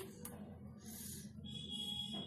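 Faint soft rubbing of floured hands pressing the edges of a stuffed paratha's two dough layers together on a marble counter, over a low steady hum. A thin steady high tone comes in near the end.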